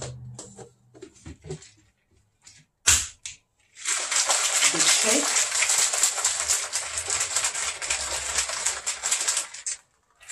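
Plastic shaker bottle of liquid drink shaken hard by hand for about six seconds, its contents rattling and sloshing rapidly. A single sharp click comes just before the shaking starts.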